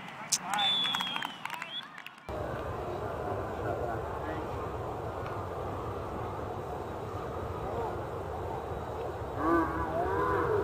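Distant shouts and calls of players across an outdoor sports field, with a brief high-pitched tone near the start. About two seconds in, a steady low rumble sets in abruptly beneath the faint voices.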